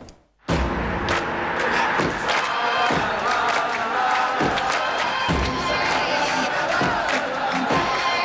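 Stadium crowd cheering and chanting mixed with music in a highlight montage. It starts abruptly after a brief silence, about half a second in, with a few low thuds through it.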